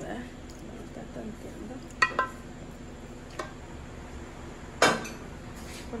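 Metal cookware clinking: a pot knocking against the rim of a stew pan, two short ringing clinks about two seconds in and a louder knock near five seconds.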